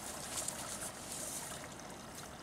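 Faint, steady outdoor background hiss with a light rustle in the first second or so.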